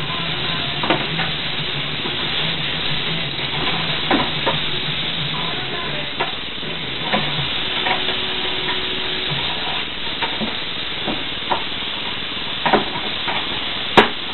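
Western diamondback rattlesnake rattling in a steady, sizzling buzz, the defensive warning of a snake being handled with tongs. Scattered sharp knocks and clicks of the metal tongs and hook against the plastic transport box punctuate it, the sharpest right at the end.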